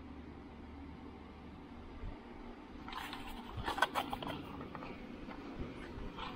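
Faint steady background hum, with a short run of light clicks and handling noise about three to four seconds in.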